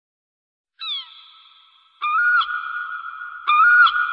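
Logo-intro sound effect: a short falling electronic tone that fades away about a second in, then from two seconds in a steady high electronic tone with a few brief upward pitch blips.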